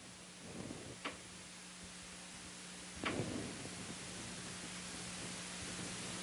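Quiet room tone: a steady low hum under a soft hiss, with two faint short knocks about two seconds apart.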